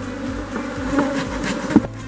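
Honeybees buzzing in an opened hive: a steady hum of many bees. A short knock sounds near the end.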